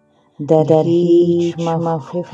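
A solo voice chanting Persian verse in long held, melodic notes. It comes in about half a second in, after a brief pause.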